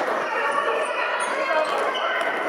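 Indoor football played in a sports hall: players and onlookers shouting and calling over one another, echoing in the hall, with the ball being kicked and bouncing on the floor. A few short, high squeaks come through about a second in.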